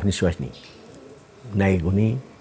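A man speaking, with a pause of about a second in the middle; a bird calls faintly in the background.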